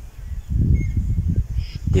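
Wind buffeting the microphone outdoors, an uneven low rumble that grows louder about half a second in, with a faint bird chirp about a second in.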